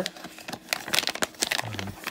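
Crinkling and rustling of packaging being handled and pulled at to open it, a quick irregular run of small crackles.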